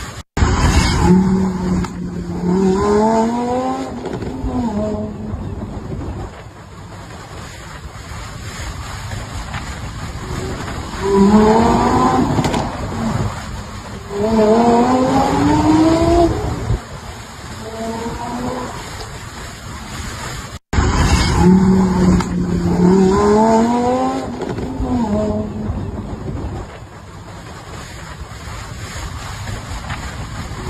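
Lamborghini Huracán V10 engine accelerating hard, its pitch climbing in loud sweeps again and again as it revs up. The sound cuts out briefly twice, and after the second cut the same run of revs repeats.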